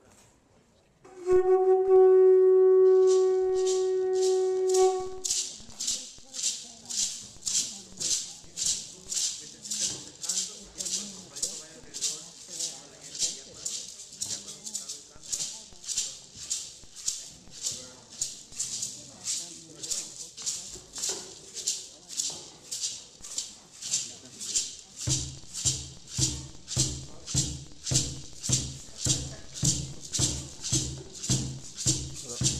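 A wind instrument sounds one long steady note for about four seconds. Then gourd rattles shake on an even beat, about one and a half strokes a second, and an upright ceremonial drum joins on the same beat near the end.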